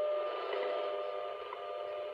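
WWV shortwave time signal played through the Heathkit GC-1000 clock's receiver speaker: a steady tone broken by a short tick once a second, over radio static.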